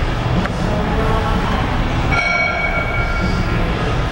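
Loud, steady gym background noise with a heavy low rumble. A sustained high-pitched tone sounds for about a second, starting about two seconds in.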